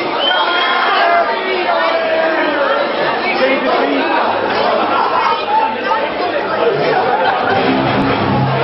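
Crowd chatter, many voices overlapping in a large hall. Low bass notes come in near the end.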